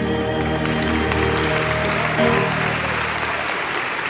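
The last held notes of a slow ballad fade out over the first couple of seconds as audience applause starts up and takes over.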